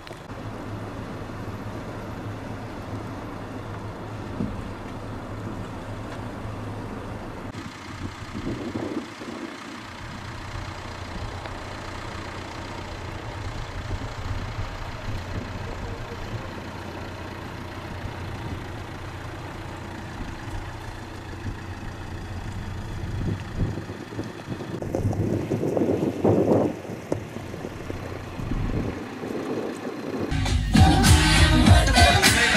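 Vehicle engines running with a steady low hum, with louder swells about eight seconds in and again near the end.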